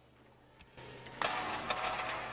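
A high jumper landing on the foam landing mat: a sudden thud and rush of noise about a second in, with several sharp knocks after it.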